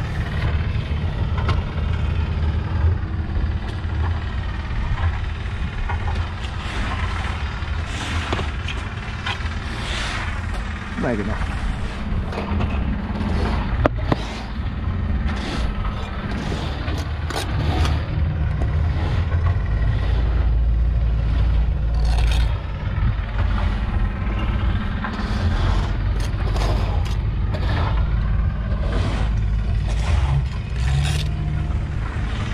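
Bricklaying: a steel trowel scraping and tapping on mortar and clay bricks as they are laid, with sharp clicks. A steady low rumble runs underneath and grows louder in the second half, and indistinct voices are heard now and then.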